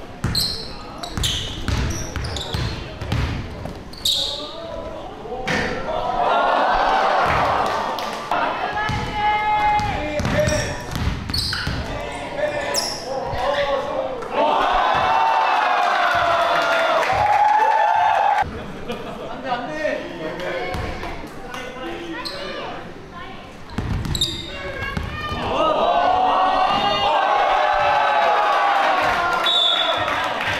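A basketball being dribbled on an indoor hardwood court, with sharp bounces and short high sneaker squeaks. Spectators shout and cheer in three loud bursts as points are scored.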